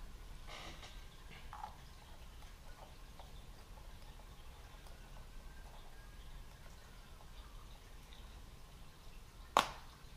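Quiet room tone with a low steady hum, a few faint handling noises in the first couple of seconds, and one sharp click near the end.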